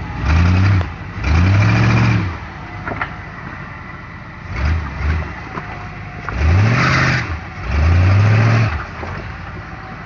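Off-road rig's engine revving in about five bursts, each rising and then falling in pitch, with a steady run between them, as it strains to crawl over a rock its back end is hung up on.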